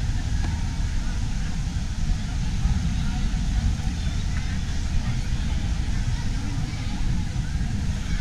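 Indistinct background voices over a steady low rumble.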